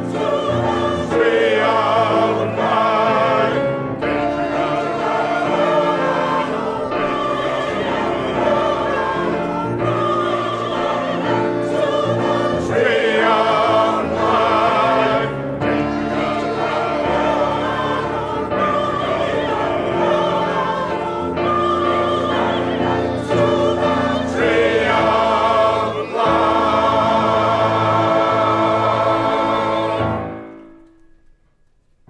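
A mixed choir of men and women singing a song in harmony, with piano accompaniment. Near the end the voices hold one long final chord.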